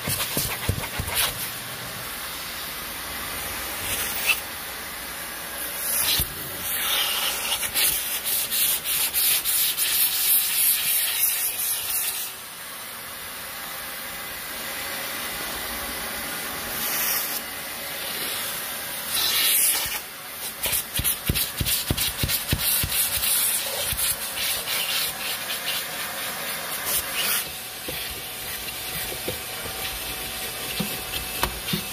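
Vacuum cleaner running, its crevice nozzle rubbing and scraping across cloth seat upholstery and carpet in short, irregular strokes.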